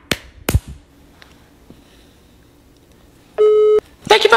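Two sharp knocks close together at the start, then a single short electronic telephone-style beep, one steady mid-pitched tone about half a second long, near the end.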